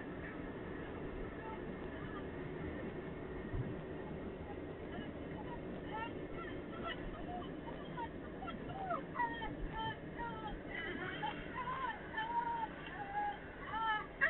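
Steady road and engine noise inside a moving car's cabin. From about halfway, short pitched sounds that slide up and down in pitch come in over it and grow more frequent toward the end.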